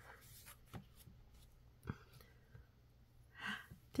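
Quiet handling of a picture book as a page is turned: a couple of soft clicks, then a brief soft hiss near the end.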